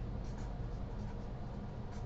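Marker pen writing on paper: a few short, faint scratchy strokes over a steady low background hum.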